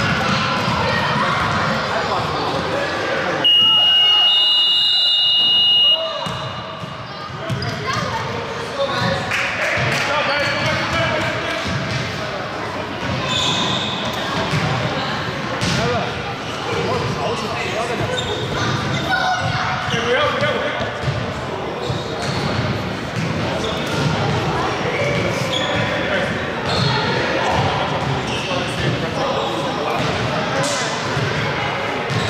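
A gym scoreboard buzzer sounds one steady, loud tone for about two and a half seconds, starting a few seconds in; its timing fits the end of a period. Before and after it, basketballs bounce on the hardwood court, echoing in the large hall.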